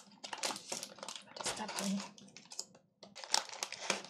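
The foil-lined plastic wrapper of a ration-pack chocolate cake being torn and peeled open by hand. It crinkles and crackles in a run of short bursts, with a brief pause about two and a half seconds in.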